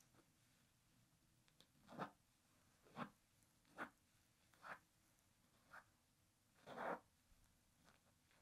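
Small scissors picking out basting stitches from a quilted fabric piece: six short, faint rasps about a second apart as the thread is snipped and drawn out of the layers, the last one longest.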